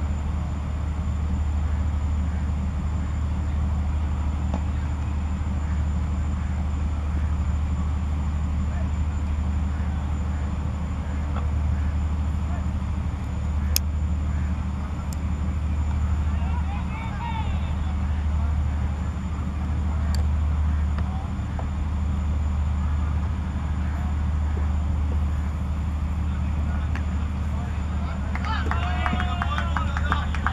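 A steady low rumble, with faint distant voices that grow near the end and a few sharp clicks.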